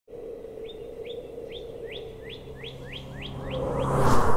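A songbird singing a series of about ten quick rising chirps that come faster and faster, over a steady low hum. A rushing swell builds near the end.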